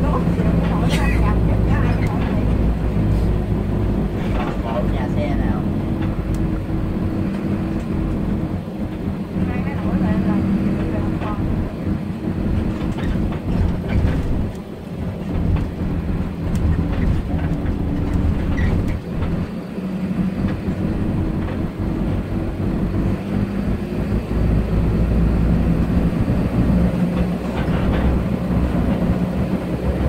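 Inside the cabin of a moving coach bus: a steady low engine drone with road noise. The drone dips briefly twice near the middle.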